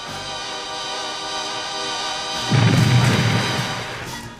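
Cartoon sound effect of a synthesized musical tone, the destructive harmony, held on one steady pitch, then about two and a half seconds in a sudden loud crash with a deep low rumble as the sea rock it strikes breaks apart.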